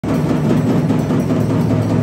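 Loud, fast drumming, a dense continuous beat.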